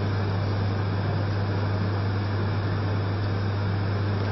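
Steady hiss with a low, even hum: the background noise of a large hall and its sound system.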